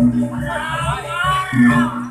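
Jaranan gamelan accompaniment: deep percussion strokes with a sustained low hum, the loudest about a second and a half apart, under a high, wavering melody that swells through the middle.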